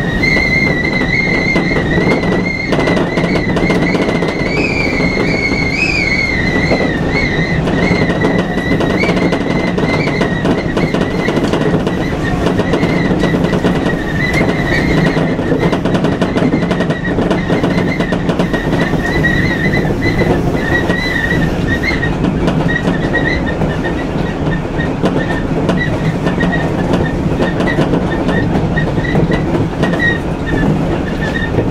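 Electric multiple-unit train running, heard from inside the cab: a steady rumble of wheels on rail with a high, wavering squeal from the wheels on the curve. The squeal breaks into brief chirps in the second half as the track straightens.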